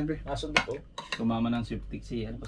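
Metal spoons clinking and scraping on plates and a steel pot as stew and rice are served and eaten, with a few sharp clinks about half a second in.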